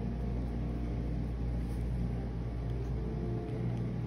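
Steady low rumble and hum that holds its level, with no separate strokes or taps standing out.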